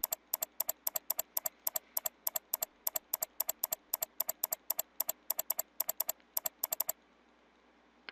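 Computer mouse button clicked rapidly over and over, about four sharp clicks a second, the clicking stopping about seven seconds in.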